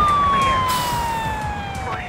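Police siren wail, its pitch falling steadily as it winds down and fades, over a low rumble with a few brief voices.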